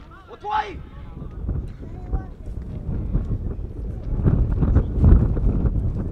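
Wind gusting across the microphone: a low rumble that builds from about four seconds in and is loudest around five seconds. A short shout comes near the start, with faint distant voices throughout.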